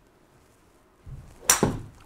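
A utility (hybrid) golf club striking a ball off a hitting mat: one loud, sharp crack about one and a half seconds in, with a second knock a split second after it. The shot is well struck.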